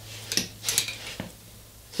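A few light clicks and knocks from a corded Hercules angle grinder and its coiled cord being handled and turned over in the hands, with a faint steady low hum underneath.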